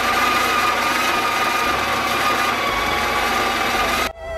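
Home espresso machine running its pump with a steady, loud hum and a high whine as the shot is pulled, espresso starting to run into the cups.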